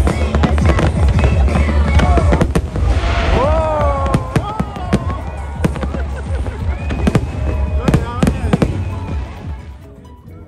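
Aerial fireworks going off in quick succession: sharp bangs and crackling over a deep rumble, dropping away suddenly near the end.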